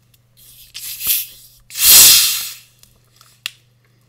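A plastic bottle of carbonated mineral water being unscrewed: gas hisses out briefly, then in a louder hiss about a second long as the cap comes loose, and a single click follows near the end.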